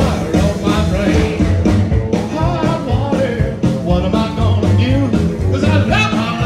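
A live rock-and-roll band plays a song with a steady beat, led by slapped upright bass fiddle and guitars.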